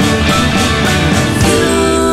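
Rock band playing an instrumental passage, with drums keeping a steady beat under bass, guitars and keyboards. Near the end a long held note comes in and the drums ease back.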